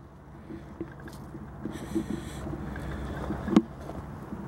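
Footsteps on gravel as a person walks around a parked van, over a steady low rumble of wind on the microphone, with one sharp click about three and a half seconds in.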